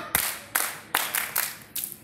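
A group of schoolchildren clapping together in a steady rhythm, about five claps in two seconds.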